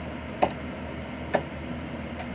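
Two short sharp clicks, about a second apart, over a steady low background hum.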